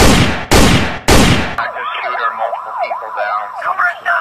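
Three gunshots in quick succession, about half a second apart, each with a long ringing tail. They are followed by several overlapping emergency sirens wailing up and down.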